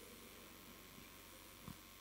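Near silence: faint steady low hum of room tone, with one brief faint sound near the end.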